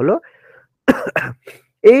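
A man's short double cough or throat-clear about a second in, between spoken words.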